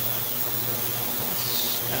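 Ultrasonic cleaner running: a steady hiss from the cleaning bath over a low, even hum.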